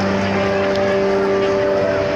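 Soft background music of long held chords, changing to a higher chord about as the sound begins and holding steady, over the chatter of a crowd in a large hall.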